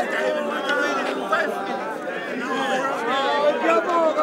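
Crowd of spectators chattering and calling out: many voices overlapping in a steady babble.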